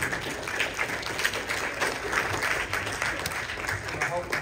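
Congregation applauding, many hands clapping together.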